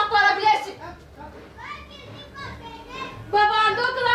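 Children's voices chattering and calling out, high-pitched and loud in the first second, softer in the middle and loud again near the end.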